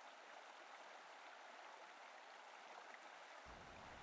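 Near silence: a faint, steady hiss of flowing river water.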